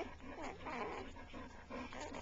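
Newborn puppies making soft, short grunts and squeaks while nursing at their mother.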